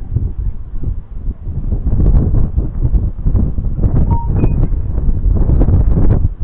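Wind buffeting the camera microphone: a loud, uneven low rumble that grows stronger about two seconds in.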